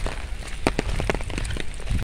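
Rain falling, with scattered sharp ticks of drops striking close to the microphone over a low rumble.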